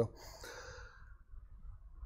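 A man's faint breath, a soft exhale in the first second picked up by his clip-on microphone, then low room noise.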